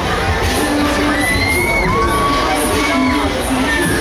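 Riders on a spinning Huss Break Dance ride screaming and shouting, several long high screams one after another, over loud ride music and the crowd.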